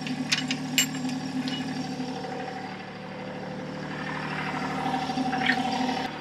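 Diesel engine of a compact tractor idling steadily, with a few sharp metallic clinks in the first second and a half as a steel travel lock pin is pulled from the backhoe boom.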